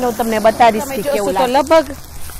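A voice speaking throughout, over a steady faint hiss of green chillies frying in oil in a wok.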